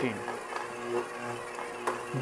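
Soft background music over a KitchenAid stand mixer running at its lowest speed, its dough hook kneading pizza dough. A single sharp click comes just before the end.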